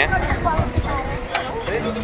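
Faint, indistinct voices of people nearby over a low rumble of wind on the microphone, with a few light clicks.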